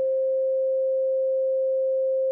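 A single steady pure sine tone of about 500 Hz, an electronic meditation 'frequency' tone, held alone. The last faint traces of the backing music die away in the first second.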